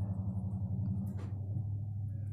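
Steady low hum, like a motor running nearby, with a faint brief rustle about a second in.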